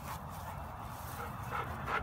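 A dog giving a few faint, short whimpers, over low rumbling.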